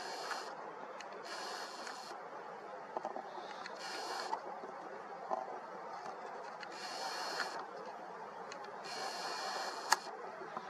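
Nikon Coolpix P1000's lens motor whirring in about five short bursts, each under a second, as the zoom and focus are worked, over a steady background hum. A sharp click comes just before the end.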